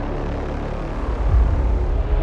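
Cinematic bender sound effect from the Evolution: Devastator Breakout Pro sample library: a dense, deep rumbling drone with a low hit and pitch bend about a second and a half in.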